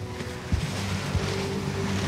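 Rumbling outdoor noise, like wind buffeting the microphone, with a faint steady hum underneath and a few small knocks.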